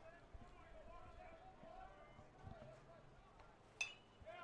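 Near silence with faint distant voices, then near the end a single sharp ping with a brief ring: a metal baseball bat fouling off a pitch.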